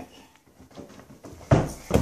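Inflatable beach ball being struck in play: one sharp thump about one and a half seconds in and a lighter one just before the end, after a quiet stretch of room tone.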